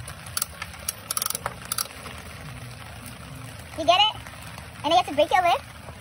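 Turning crank of a coin-operated capsule vending machine: a quick run of metal clicks with a brief ringing squeak in the first two seconds. Steady rain hiss underneath, and a high voice calls out twice in the second half.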